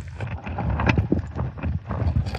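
Underwater sound in a creek: a low rumble of moving water with irregular small clicks and knocks of rock and gravel, as a snuffer bottle works a crack in the bedrock.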